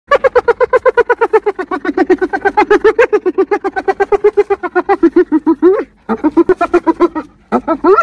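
Spotted hyena giggling: a long run of rapid staccato hoots, about nine a second, sliding slightly lower in pitch. It breaks off twice, just before six seconds and just after seven, and starts again each time.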